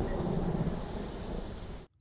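Steady rain with a low thunder rumble in a film's soundtrack, cutting off suddenly near the end.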